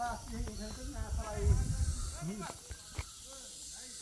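Several people's voices talking indistinctly in the background over a steady high hiss, with bursts of low rumble like wind on the microphone.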